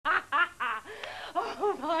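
A woman laughing in a run of short bursts, about three a second, with a breathier stretch midway, before she starts to speak.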